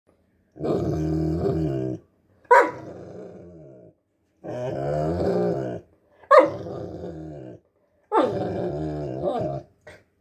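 Newfoundland dog 'talking': five drawn-out, low, growly vocalisations in a row, each about a second or more long. The second and fourth start with a sharp bark-like yelp and then trail off.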